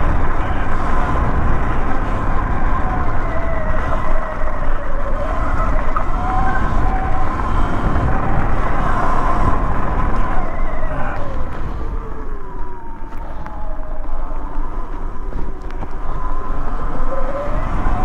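Sur-Ron Light Bee X electric dirt bike riding a rough dirt track: the electric motor's whine rises and falls in pitch with the throttle, over the rumble of wind and tyres. The whine climbs sharply near the end as the bike speeds up.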